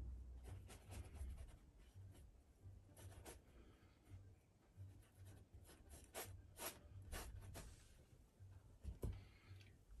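Faint strokes of a paintbrush dragging paint across a stretched canvas: short strokes at irregular intervals, with brief pauses between them.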